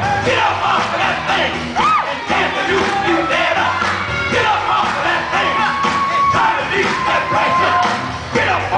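Recorded dance music playing for the routine, with an audience whooping, yelling and cheering over it throughout.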